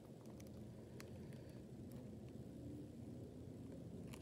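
Near silence: faint room tone with a few small, scattered clicks from a plastic action figure being handled.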